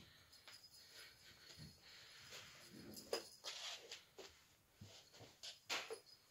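A cat batting and dragging a tinsel Christmas tree toy on a string: faint, irregular rustling and scraping with a few sharp clicks, the loudest a little after the middle and near the end.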